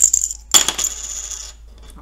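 A handful of six plastic counters tossed onto a paper worksheet on a tabletop: a sharp clatter about half a second in as they land, rattling and settling over about a second.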